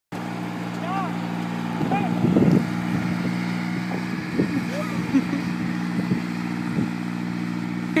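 A vehicle engine hauling a portable building runs steadily at an even, low pitch, with a louder rumble about two and a half seconds in and a few short squeaky chirps.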